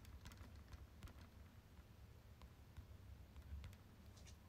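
Near silence with faint, irregular light clicks, like fingertips tapping or typing, over a low steady hum.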